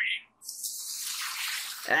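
Anime sound effect of the nine-tailed fox's chakra being drawn out of its host: a steady hissing rush that starts about half a second in, after a brief sound cuts off.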